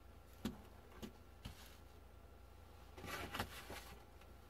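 Tarot cards being handled on a cloth-covered table: a few soft taps as cards are picked up, then a short burst of card rustling about three seconds in as they are squared into the deck.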